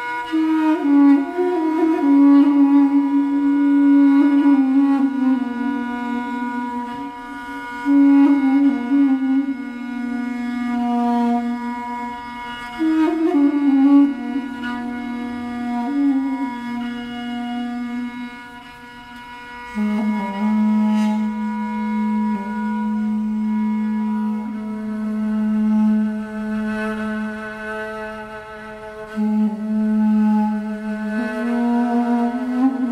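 Armenian duduk and Persian kamancheh improvising together: a slow, reedy melody in falling phrases over sustained bowed notes. After a brief lull about 19 seconds in, a long low note is held while a higher line moves above it.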